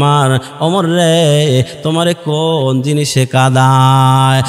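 A man's voice intoning a sermon in the drawn-out, sung chant style of a Bengali waz, in a few wavering melodic phrases with short breaks between them, ending on a long held note that starts a little past three seconds in.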